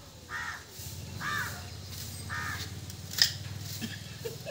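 A crow cawing three times, each caw short and harsh, over a steady low hum. A single sharp click comes near the end.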